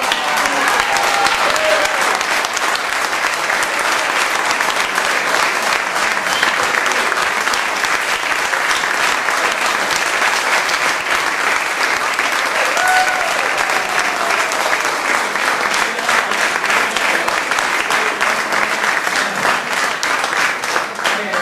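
Audience applauding steadily throughout, with a few voices calling out over the clapping.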